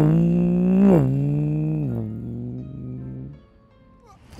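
A motorcycle engine sound held on one pitch, dropping lower in steps about once a second and fading out about three and a half seconds in.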